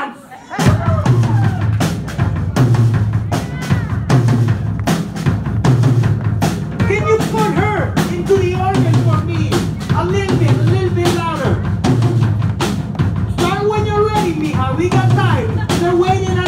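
Live synth-punk band starting up about half a second in: a drum kit keeping a steady driving beat over a pulsing low bass, with keyboard lines on top.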